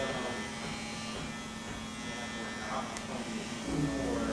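Electric hair clippers buzzing steadily as they cut the short hair on the side of a man's head.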